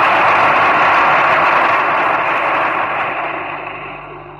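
Audience applause at a speech, loud at first and fading away steadily toward the end, heard through an old, muffled, narrow-band recording.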